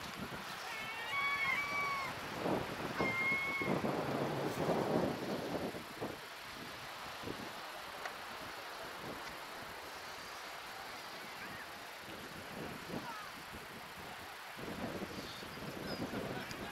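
Gulls calling: several short cries in the first four seconds, each with a bending pitch, over steady outdoor background noise. A louder rush of noise comes about four seconds in.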